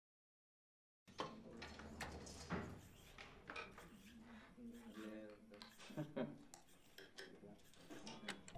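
Silence for about a second, then faint room sounds: murmured voices, small clinks and knocks of objects being handled, over a low steady hum.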